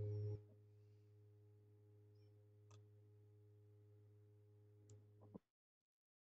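Steady low electrical hum that cuts off about a third of a second in. It leaves near silence with only a faint trace of the hum and two faint ticks.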